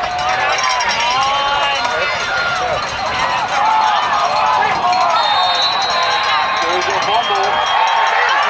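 Football crowd in the stands yelling and shouting during a play, many voices overlapping at once.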